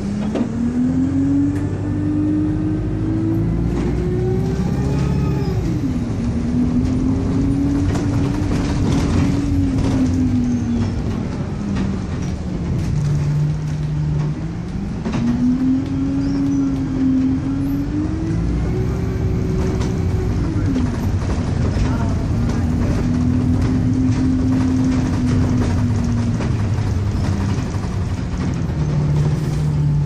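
Alexander Dennis Enviro200 single-deck bus heard from inside by the doors: the engine and drivetrain pitch climbs as the bus pulls away, drops at a gear change about five seconds in, and eases back to a steady idle for a couple of seconds. It then pulls away again, shifts gear about twenty seconds in, and settles back to idle near the end, with interior rattles throughout.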